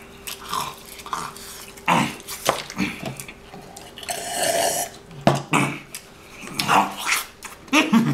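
Eating at a table: fork and knife clicking and scraping on a plastic TV-dinner tray, with short mouth noises like burps and smacks from eating.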